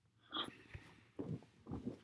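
Faint, scattered movement and handling sounds, with a small click under a second in, as a person lets go of the camera and settles back into his seat.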